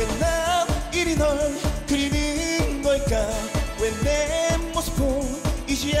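Upbeat dance-pop trot music with a steady kick drum beat and a wavering melody line with singing over it.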